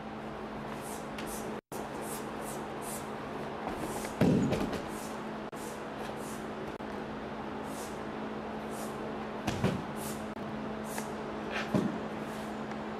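A body hitting the padded mat with one heavy thump about four seconds in, during a takedown, then a couple of lighter thuds later from bodies moving on the mat. Under it runs a steady room hum.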